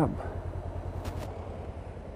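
Motorcycle engine idling, a low steady pulsing rumble, with a short hiss about halfway through.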